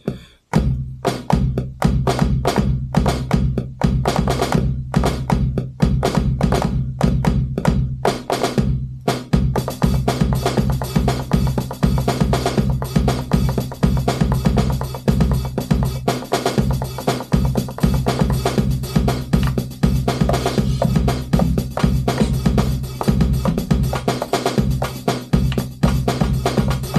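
Drum beat playing back from an Akai MPC One sampler as it records to its arrangement: an acoustic drum kit pattern over a steady low bass. A busier, brighter layer joins about ten seconds in.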